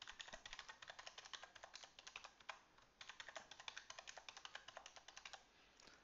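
Faint, quick keystrokes on a computer keyboard: typing a password and then its confirmation, in two runs with a short pause about halfway through.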